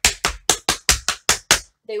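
Tap shoes striking a wooden tap board in a run of about eight crisp, evenly spaced taps, some five a second: running shuffles danced with the shuffles brushed out to the side. The taps stop shortly before a woman resumes speaking near the end.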